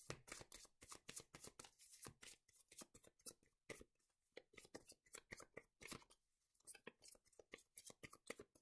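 Faint, rapid tapping and rustling of a Lenormand card deck being shuffled in the hands.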